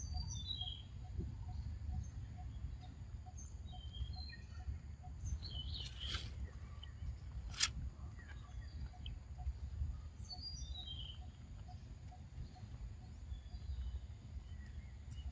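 Outdoor forest ambience: birds chirping in short calls that fall in pitch, over a steady low background rumble and a faint repeated pip about three times a second. A brief rustle and then a single sharp click come about halfway through.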